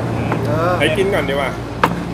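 Men's voices talking briefly at a table over a steady low hum, with one sharp click near the end.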